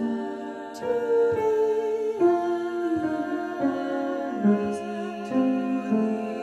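Three women's voices, soprano, mezzo-soprano and alto, singing a cappella in close harmony, holding notes together and moving to a new chord every second or so.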